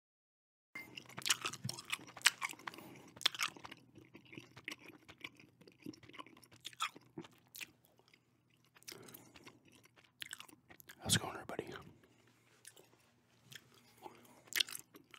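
Gum being chewed right up against a microphone: irregular sharp mouth clicks and smacks, densest in the first few seconds and again about eleven seconds in.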